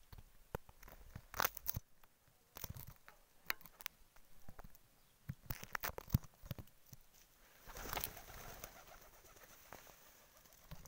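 Irregular clicks and rubbing from a finger moving over the phone's microphone, with domestic pigeons cooing.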